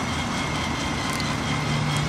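Steady outdoor background noise with a faint high tone and, from partway in, a low steady hum; no distinct strokes or knocks stand out.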